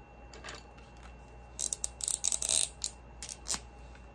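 Plastic pens and highlighters clattering and clicking against each other as they are picked out of a loose pile, with a quick run of sharp clicks about halfway through and one more click near the end.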